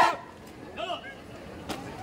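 A drill troop's boots stamping in unison, one sharp stamp right at the start with another sharp knock near the end, over faint spectator voices and chatter.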